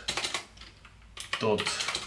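Typing on a computer keyboard: a quick run of keystrokes, a short pause, then more keystrokes near the end.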